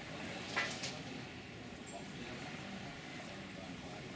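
Faint background voices, with one short, sharp sound about half a second in.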